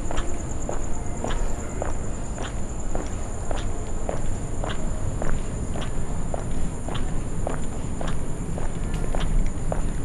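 Footsteps on stone paving at a steady walking pace, nearly two steps a second, each a sharp tap.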